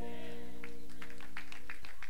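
A church worship band holding a sustained chord, which stops near the end, with a few short clicks over it.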